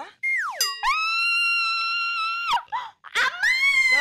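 Comedy sound effects: a quick falling whistle-like glide, then a long, steady high-pitched tone held for about a second and a half that cuts off. Near the end comes a shorter pitched cry that rises and then falls.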